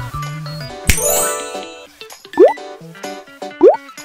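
Light background music with cartoon sound effects laid over it: a bright chime-like hit about a second in, then two short, quickly rising swoops.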